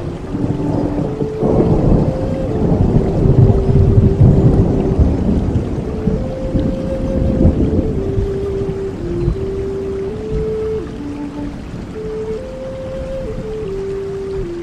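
Native American flute playing a slow melody of long held notes that step between a few pitches, over steady rain. A low rumble swells in about a second and a half in and fades away by about eight seconds.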